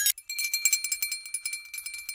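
Short bright music sting of rapid jingling and rattling, like bells or a shaker, with a steady high ringing tone coming in about a third of a second in.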